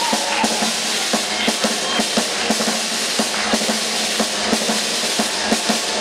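Live rock band playing through a PA, led by a drum kit: kick and snare hits landing several times a second under a dense wash of cymbals.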